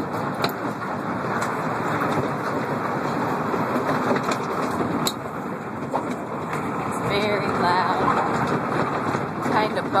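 Horse transport container rolling over a ball-bearing loading floor: a steady bumpy rumble with scattered clatter and knocks. A brief wavering pitched sound comes in about seven seconds in.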